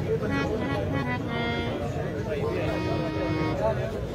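A bowed string instrument playing a few held notes over steady crowd chatter.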